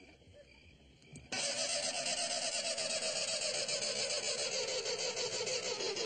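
A sudden, loud, continuous rushing noise from the car, starting about a second in, with a slowly falling pitch.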